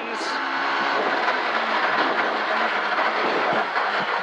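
Ford Escort Mk2 rally car's engine running hard, heard from inside the cabin together with gearbox and road noise, steady and loud.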